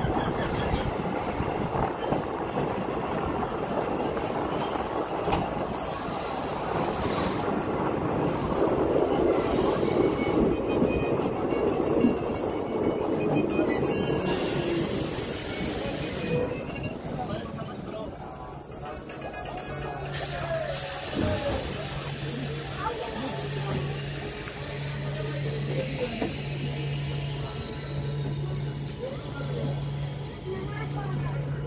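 Running noise of a passenger train heard from an open coach doorway: wheels rumbling over the rails, with high-pitched wheel squeal through the middle. In the second half the noise eases and a low hum comes and goes about every two seconds.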